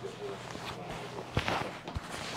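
Broom sweeping cut hair across a tiled floor: a few short, brisk strokes, the sharpest about one and a half seconds in.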